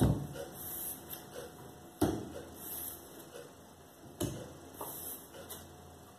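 Tarot cards being drawn and laid down on a wooden table: three short knocks about two seconds apart, with quiet card handling between them.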